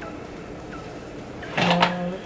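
Quiet room tone, then a short breathy hum from a woman's voice lasting under half a second, near the end.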